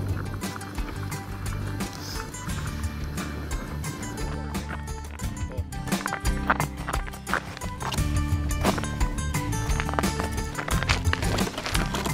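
Background music with held notes and a steady percussive beat.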